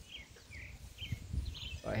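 Several short, high bird chirps scattered over a quiet outdoor background hum.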